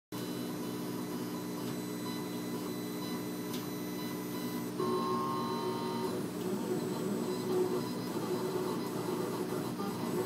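40-watt CO2 laser cutter at work, its gantry stepper motors whining in several steady tones over a faint hiss. The tones change about five seconds in as the head's motion changes, then turn rougher and more uneven.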